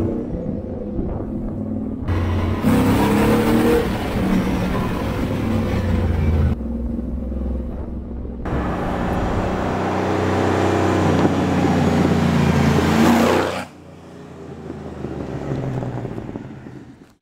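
Restored 1971 Toyota Land Cruiser FJ40's engine and stainless steel exhaust running under acceleration, the engine note climbing as it pulls through the gears. It comes in several edited clips that cut off abruptly, the last one quieter.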